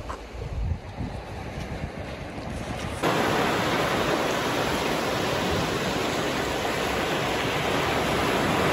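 Small waves breaking and washing up on a sandy shore, a steady rush of surf that comes in suddenly and loudly about three seconds in. Before that there is a quieter stretch of wind.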